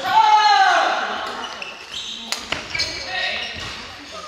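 Badminton play in a large, echoing gymnasium. A drawn-out call falls in pitch at the start, then two sharp racket strikes on a shuttlecock come in quick succession about two and a half seconds in, with fainter voices from other courts.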